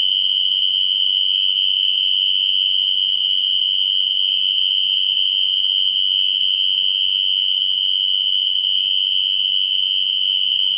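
A dense chorus of crickets merging into one steady, high-pitched shrill with no breaks.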